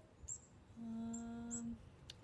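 A woman's drawn-out 'um', held on one steady pitch for about a second, with faint short high chirps a few times in the background.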